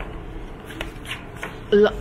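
Faint rustling and a few light clicks over a low, steady room hum, then a man's voice starts near the end.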